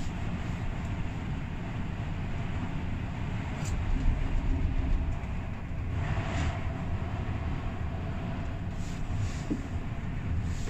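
Steady low rumble and rattle inside a moving gondola lift cabin as it runs along the cable. About six seconds in, a louder rushing swell comes as a cabin going the other way passes close by.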